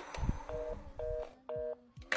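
Telephone fast-busy tone from a handset: three short, identical two-note beeps about twice a second, the signal of a dead or disconnected line. A low thump comes just before the beeps.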